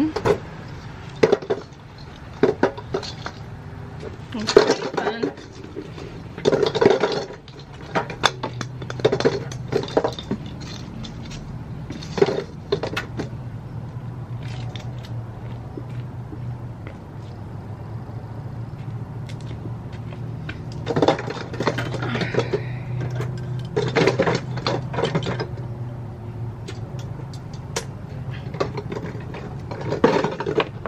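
Christmas ball ornaments clinking and knocking against each other and the metal-framed glass lantern they are being packed into, in scattered clusters of light clatter. A low steady hum runs under much of the middle.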